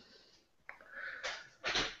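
A man's breathing between phrases: a small mouth click, then a short, noisy intake of breath that is loudest near the end.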